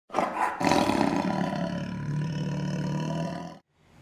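A roar-like intro sound effect that comes in with a hit, hits again about half a second later, holds steady, then cuts off suddenly a little before the end.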